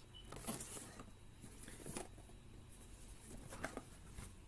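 Faint handling sounds of a cardboard camera box being turned in the hands: short scrapes and rubs about half a second in, around two seconds, and near the end.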